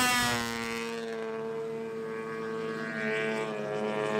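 Snowmobile engine at high, steady revs as the sled skims across open water. The note drops slightly at first, then holds.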